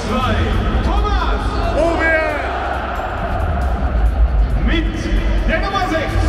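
Stadium PA announcer calling out the team lineup over music with a strong, steady bass, above the noise of a full stadium crowd.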